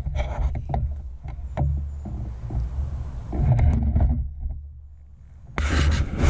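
Wind buffeting the microphone: a low rumble that rises and falls, with a few louder gusts of rustling noise, the loudest near the end.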